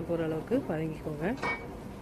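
A metal spoon clinking against a cooking pot, with a voice over it; two sharp clinks come near the end.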